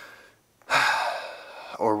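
A man's loud, sudden breath: a rush of air that starts about two-thirds of a second in and trails off over about a second, between words.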